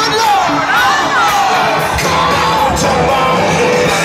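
A live country band playing loudly through a PA, with shouts and whoops from the crowd mixed in.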